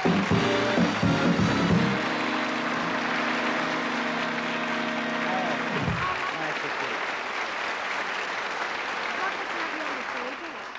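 Studio audience applauding over band play-on music. The music ends with a falling slide about six seconds in, and the applause goes on to the end.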